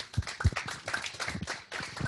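Audience applauding: a dense patter of hand claps.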